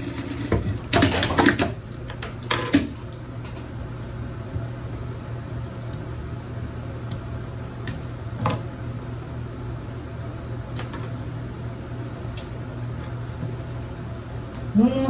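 Industrial sewing machine: a few short stitching bursts in the first three seconds, then its motor humming steadily while satin fabric is handled, with a few soft clicks and rustles.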